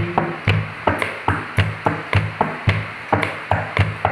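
Hand-tapped rhythm on a hard surface: a steady beat of sharp taps, about three to four a second, each with a low thump, keeping time for a sung Hindi song.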